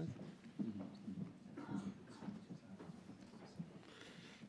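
Faint footsteps and scattered knocks of several people walking onto a stage platform and moving about a table, with low murmured voices.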